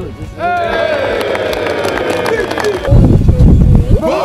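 A group of football players shouting together as they gather into a huddle: a long drawn-out call whose pitch slowly falls, then a loud low rumble near the end.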